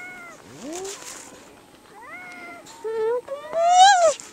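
A white-coated seal pup crying: a series of pitched, cat-like calls, the last one rising in pitch and the loudest, near the end.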